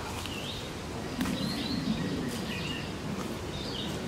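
Wild birds chirping, short high calls repeating over a steady outdoor hiss, with a faint low wavering sound in the middle.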